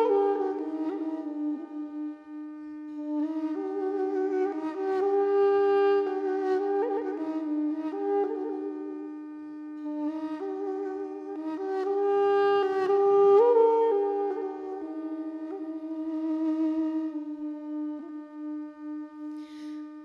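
Solo Armenian duduk playing a slow, ornamented folk melody in long phrases over a continuous steady drone note.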